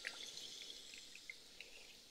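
Faint spattering and dribbling of water running out of the drain opening of an Atwood RV water heater, as a hose-fed rinse wand sprays inside the tank to flush it out, with small scattered drips and ticks.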